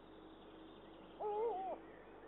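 Eurasian eagle owl giving a single short call, about half a second long, wavering up and down in pitch, a little over a second in.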